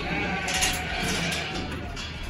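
Background music with sheep bleating over it.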